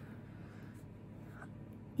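Quiet room tone in a small room: a faint steady low hum with no distinct event.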